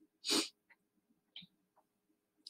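A short, sharp breath drawn in by the speaker, lasting about a third of a second, followed by a few faint small clicks.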